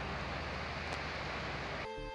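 Steady rushing of a fast-flowing river over rocks. Music with sustained tones and a regular beat starts just before the end.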